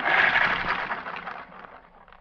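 A wound rubber band spinning off a rubber-band car's axle: a sudden noisy rattle that starts at once and fades out over about a second and a half as the band runs down.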